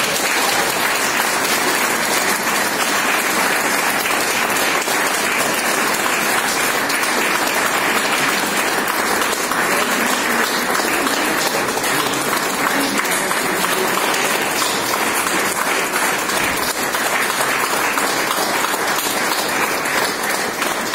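Audience applauding steadily at the end of a sung operetta number.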